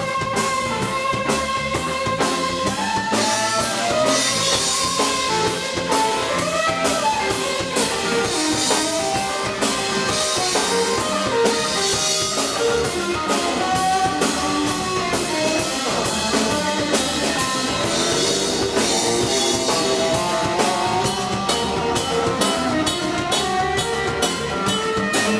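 Live blues trio playing an instrumental passage: a Telecaster-style electric guitar plays lead lines with string bends over electric bass and a drum kit keeping a steady beat.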